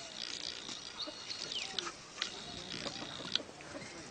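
A dog and a kangaroo play-fighting on grass: scattered short, sharp clicks and faint, brief low animal sounds.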